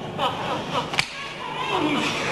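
A single sharp smack about a second in as two wrestlers come to grips, over scattered crowd voices and shouts.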